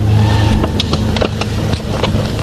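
Live concert sound at the close of a song: a steady, loud low note held like a bass drone, with scattered sharp clicks over it.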